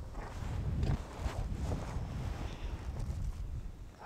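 Wind noise on the microphone: a low, uneven rumble that rises and falls, with a few faint ticks.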